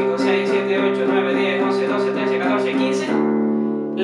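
Electric guitar repeatedly picking a power chord at the tenth fret, about four even strokes a second. Near the end it changes to a chord on the open strings that rings on.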